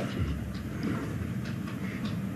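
Steady low rumble of room tone in the pause between questions, with a few faint ticks.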